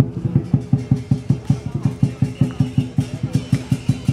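Dragon-dance percussion accompaniment: a drum beaten in a fast, steady rhythm, starting abruptly.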